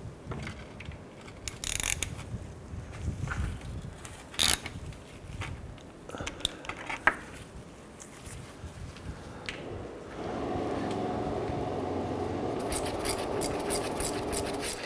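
Metal tool scraping and clinking as a 15 mm socket on a swivel is worked onto a bolt, with scattered short knocks. About ten seconds in a steady hum starts, and fast light clicking joins it near the end.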